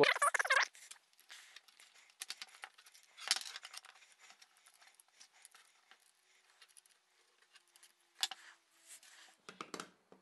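Light clicks, taps and rustles of wooden jig parts and small metal hardware being handled and fitted together, with louder clusters about three seconds in and about eight seconds in.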